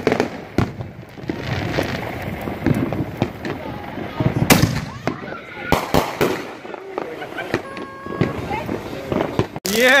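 Consumer fireworks going off close by: a string of sharp bangs and crackling, the loudest reports about four and a half and six seconds in.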